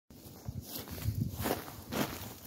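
Footsteps on snow as a person walks up close, a run of irregular soft steps.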